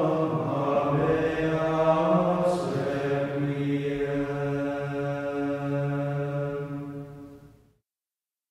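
Slow vocal chant with long held low notes that change pitch only a few times, fading out near the end.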